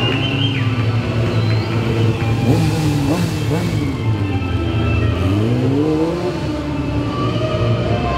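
Yamaha sport bike engine revving up and down, climbing sharply about two and a half seconds in, then dropping and rising again near the end, under background music.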